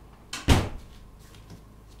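A sudden knock about half a second in: a small hit followed at once by a louder one that dies away quickly.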